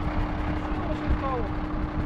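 Diesel tanker truck engine idling while still cold: a steady low rumble with a constant hum over it.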